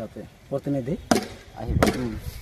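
Three sharp chopping strikes on wood, roughly a second apart, with a man's voice in between.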